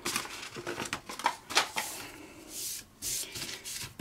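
Adhesive backing paper being peeled from under an Easy Peelzy flexible print sheet while a hand rubs the sheet down onto a glass print bed, giving irregular rustling and scuffing.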